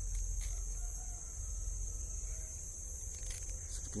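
Steady, high-pitched drone of a tropical forest insect chorus, over a low rumble.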